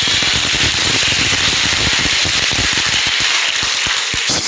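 Audience applauding: a steady, dense crackle of many hands clapping.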